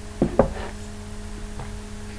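A mug set down on a hard surface: two quick knocks about a fifth of a second apart, over a steady low hum.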